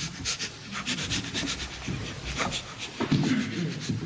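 People laughing in a room: many short, breathy bursts of laughter.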